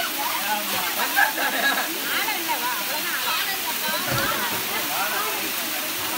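Waterfall pouring down a rock face, a steady rush of water, with people's voices talking over it.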